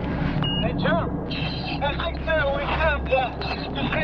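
A diver's voice over an underwater communication radio, garbled and not understandable, in a run of short rising-and-falling syllables over a steady low hum.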